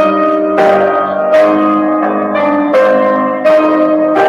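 Grand piano playing a slow introduction, chords struck about once a second and left to ring.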